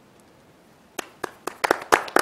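A few people clapping their hands. After about a second of quiet, single claps start and then quicken into steady applause.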